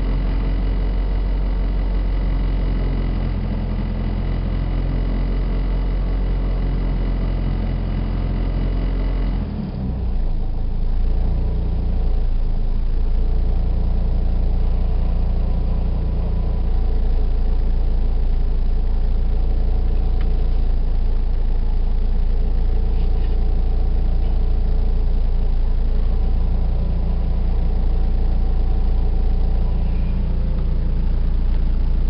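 Proton car's engine running at idle, heard from inside the cabin. About ten seconds in, a steady thin whine drops out and a deeper, slightly louder engine drone takes over.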